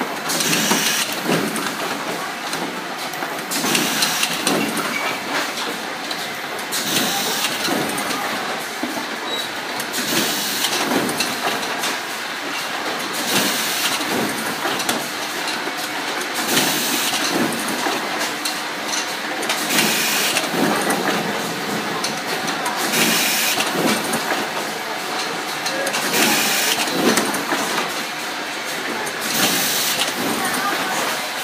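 Automated lighter assembly and testing machinery running steadily with a mechanical clatter. A short high-pitched hissing burst repeats about every three seconds, in time with the machine's cycle.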